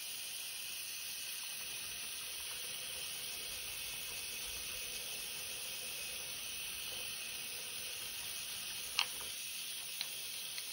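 Tap water running steadily from a bathroom faucet onto a denture and brush held under the stream, falling into a cloth-lined sink: an even, steady hiss. One short, sharp click about nine seconds in.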